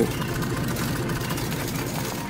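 Steady engine-like machinery running, a low rumble with hiss, typical of ship or cable-laying machinery.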